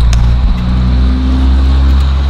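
A car engine running close by: a loud, steady low rumble with a constant hum.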